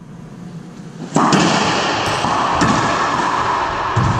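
Racquetball being hit in an enclosed court: a sharp crack about a second in, then further strikes of the ball off racquet and walls, each echoing loudly around the hard-walled court.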